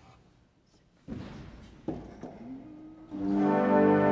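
Two wooden knocks about a second apart as stop knobs are drawn at a Fisk pipe organ console. About three seconds in the organ enters with a loud, sustained full chord.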